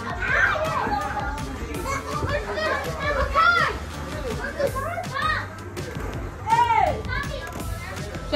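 Children playing and calling out over one another, with high rising-and-falling voices and loud calls about half a second, three and a half and six and a half seconds in.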